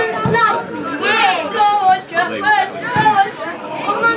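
Spectators' voices close by, several people talking over one another, with high-pitched children's voices among them.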